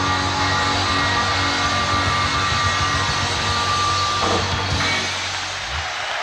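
Live blues-rock band with electric guitar ringing out on a held final chord. The chord breaks off about four seconds in, and the crowd's applause rises as the last low notes die away.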